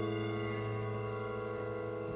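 Grand piano chord ringing on with the sustain held, slowly fading, with no new notes struck.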